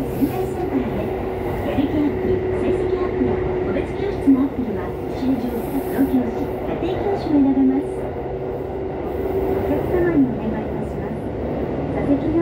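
Interior running noise of a Sendai Subway Namboku Line train between stations: a steady rumble of wheels on rail with a held motor whine.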